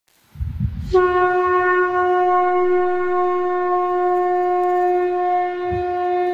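A conch shell (shankh) blown in one long, steady, unwavering note that starts about a second in, just after a brief low rumble.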